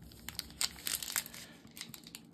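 Foil Pokémon booster pack wrapper crinkling as it is handled, a run of irregular sharp crackles.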